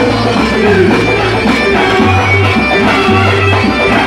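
Live band playing loud folk dance music: a held, bagpipe-like melody line over hand drums (goblet drum and frame drum) and a pulsing bass, through the PA.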